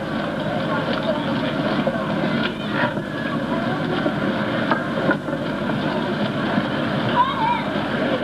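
Steady, dense city street noise with snatches of passers-by's voices, picked up on a moving handheld camcorder.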